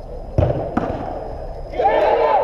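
A football struck hard: a sharp thud about half a second in and a softer second thud a moment later. Near the end, players start shouting in the covered hall.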